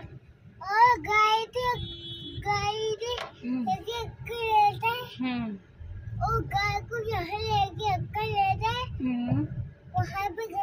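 A small boy's high voice singing in short sing-song phrases, with the low road rumble of the car cabin underneath.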